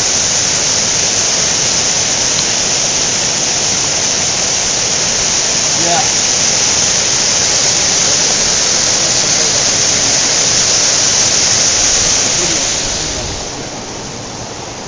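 Mountain stream rushing over boulders in small cascades, a loud steady rush of water that grows quieter near the end.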